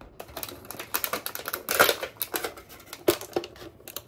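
A bread knife sawing through a crusty loaf, the crust crackling and clicking under the blade, followed by the crackle of a clear plastic clamshell being handled and opened. There is a loud crackle about two seconds in and another near three seconds.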